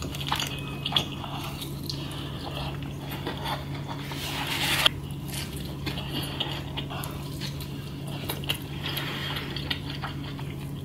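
Close-miked pizza eating: biting and chewing with scattered small clicks and wet mouth sounds, and a louder noisy stretch that builds and cuts off suddenly about five seconds in. A steady low hum runs underneath.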